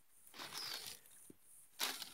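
Faint rustling of bare-root wild orchid plants being handled, leaves, stems and dry roots brushing together: a soft rustle about half a second in and a short sharper one near the end.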